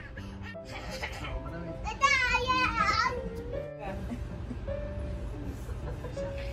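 A child's high-pitched, wavering squeal lasting about a second, about two seconds in, over soft steady background music.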